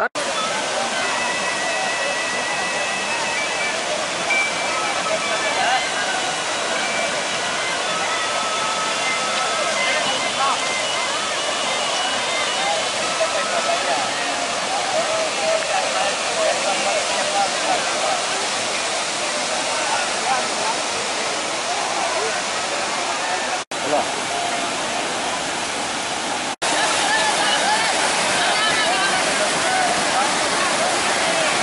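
White water rushing steadily over and between rock channels of a waterfall, with the voices of a crowd of bathers mixed in. The sound drops out briefly twice near the end and comes back a little louder after the second break.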